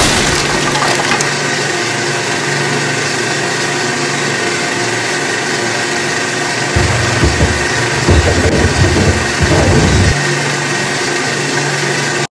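35mm film projector running with a steady mechanical hum and hiss. Between about seven and ten seconds in, a run of low rumbling thumps rises over it.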